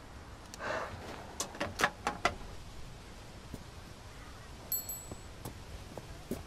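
A brief rustle, then a quick run of sharp clicks and knocks, the loudest sounds here; near the end a bicycle bell rings once, short and high.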